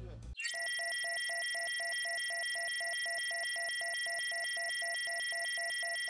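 Synthetic electronic tone from a TV show's logo ident: a steady high whine over a beep that pulses quickly, about four and a half times a second, starting a moment in.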